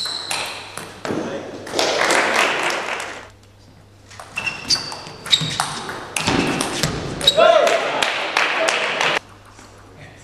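Table tennis rallies: the ball clicking off the bats and the table in quick exchanges, with short ringing pings. Twice a rally ends and a burst of crowd noise and voices follows, the second cut off suddenly near the end.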